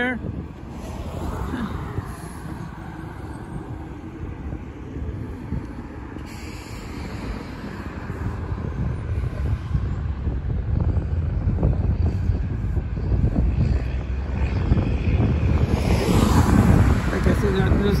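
Road traffic on a multi-lane road: steady tyre and engine noise, growing louder through the second half as cars approach and pass close by.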